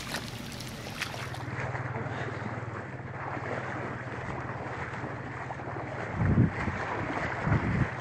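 Heavy rain falling, then after a cut, water sloshing as someone wades through shallow floodwater, with wind on the microphone and a steady low hum. Two louder wind gusts near the end.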